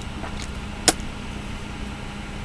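A steady low hum with a faint constant tone, with one sharp click just before the middle.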